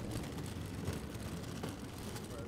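Suitcase wheels rolling over paving slabs: a steady rumble with a few faint clicks, along with footsteps.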